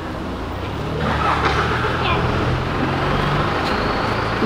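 A motor vehicle's engine running on the street close by: a steady low hum that grows louder about a second in, over general city traffic noise.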